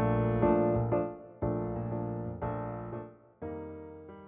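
Piano chords over a B-flat pedal bass, moving from E-flat over B-flat through E-flat minor six over B-flat to B-flat major seven: chord four, four minor, back to one. The chords are struck about five times, each left to ring and die away, and the playing grows quieter toward the end.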